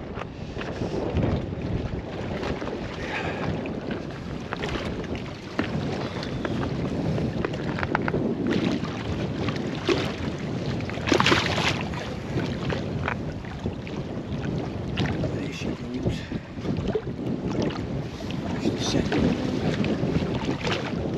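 Wind buffeting the microphone over sea water washing and splashing against shoreline rocks, with scattered knocks and one louder burst of noise near the middle.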